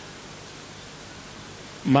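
Steady background hiss with no other event, then a man's voice starts near the end.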